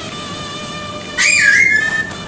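Background music, and about a second in a loud, high-pitched whistle that dips slightly in pitch and then holds steady for most of a second.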